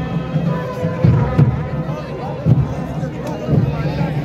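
Festival music at a crowded outdoor gathering: drums beating heavily and unevenly under held, wavering wind-instrument notes, with crowd chatter throughout.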